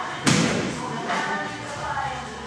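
A basketball strikes hard once, about a quarter second in, making a single loud thud that echoes in the enclosed hall.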